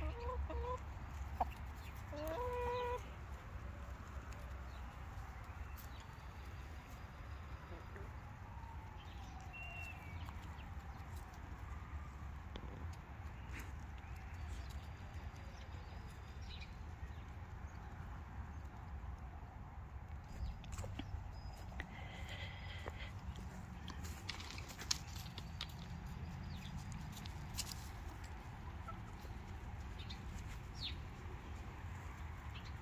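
Backyard hens clucking, a few short calls in the first three seconds and fainter scattered calls after, over a low steady rumble.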